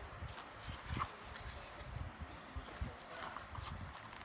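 Small plastic battery tea lights being handled and set down one after another, giving irregular light knocks and clicks, with one sharper click about a second in.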